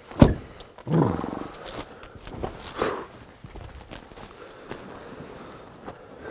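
Rustling of clothing and gear with footsteps in brush as hunters get ready. A sharp thump comes about a quarter-second in, and a short groan-like sound falling in pitch comes about a second in.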